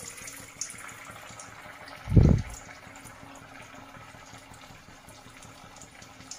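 Potato nuggets deep-frying in hot oil in a kadhai: a steady sizzling hiss. About two seconds in there is a single dull, low thump.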